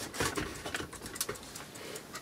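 Handling noise: a string of small clicks and rustles as a cable and a plastic indoor TV antenna are moved about by hand.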